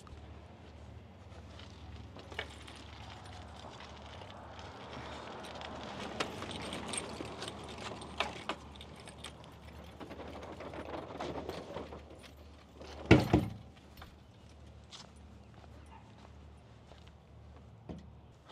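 Aluminium-tube beach cart being wheeled and lifted onto a pickup truck, with faint rattles and knocks and one loud clank about thirteen seconds in.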